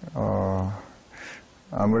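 A man's held, level-pitched hum, a thinking "hmm", lasting about half a second, then a short breath before he starts to speak near the end.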